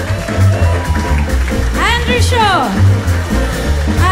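Live small-band jazz: a double bass walking steady notes under piano and drum kit, with a sung line that swoops up and down about halfway through.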